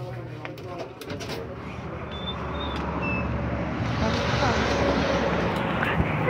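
A rushing noise with a low rumble, building from about a second in and growing louder. A few faint short high chirps come about two to three seconds in.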